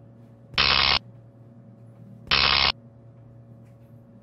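Electrical hum sound effect from animated Tesla-coil machines, broken twice by loud electric zaps, each about half a second long and under two seconds apart.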